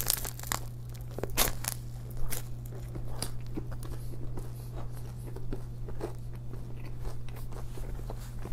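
Close-miked eating sounds of a person biting into a bagel sandwich: a few sharp crunches in the first two seconds or so, then steady chewing with the mouth closed.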